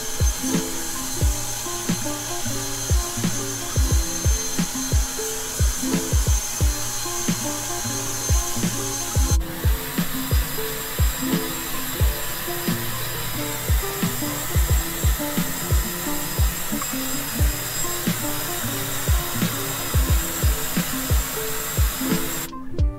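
Handheld hair dryer blowing steadily on a dog's wet coat, a steady hiss with a thin high whine that shifts in pitch about nine seconds in. Background music with a steady beat plays over it, its thumps the loudest sounds.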